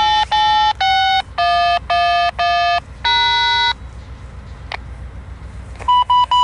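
Touch-tone (DTMF) beeps over a railway scanner radio: seven short beeps of changing pitch in quick succession, a pause, then a few quicker beeps right at the end. They are a crew's radio code for the grade crossing, which an automated voice reply then reports as activated.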